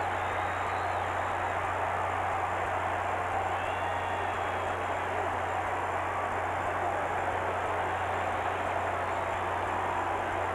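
Ballpark crowd noise, a steady din with a few faint high whistles, over a constant low hum.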